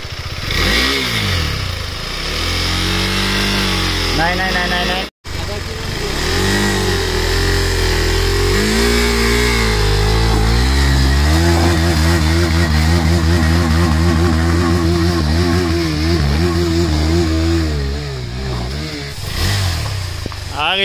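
KTM 390 Adventure's single-cylinder engine revving up and down again and again under load as the bike struggles up a steep, slippery dirt climb, the rear tyre slipping for grip. From about halfway through it is held at high revs for several seconds before easing off.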